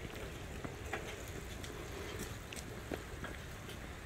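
Steady low wind and rolling noise from a bicycle moving along a paved trail, with a few faint clicks.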